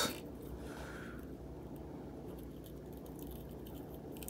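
Quiet room tone: a steady low hum with a few faint soft noises and no distinct event, while a soldering iron is held on the joint.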